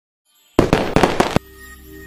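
A quick run of about six sharp percussive hits in under a second, a logo-intro sound effect, then a faint held music tone sets in.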